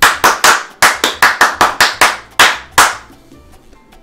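Hands clapping: about a dozen sharp, separate claps, roughly four a second, stopping a little before three seconds in.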